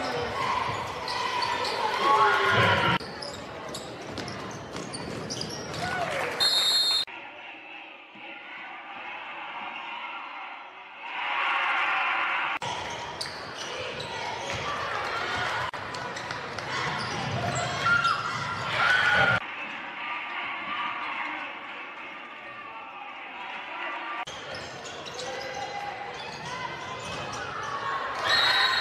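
Live sound of a high school basketball game in a gym: a ball bouncing on the hardwood court amid spectators' voices, echoing in the large hall. The sound changes abruptly several times where separate game clips are cut together.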